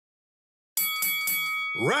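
Silence, then about three-quarters of a second in a game-show style sound effect starts, a quick run of bright bell-like dings over held ringing tones. Near the end a showy announcer voice begins calling out "Round two."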